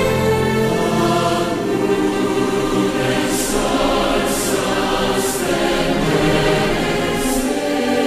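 Large choir singing a slow sacred anthem in sustained lines over instrumental accompaniment. The choir's hissing consonants come through together four times, and the low bass notes drop away early on and come back right at the end.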